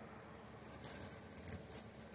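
Faint clinks of loose dimes being moved about on a towel, two soft clicks a little under a second in and again shortly after.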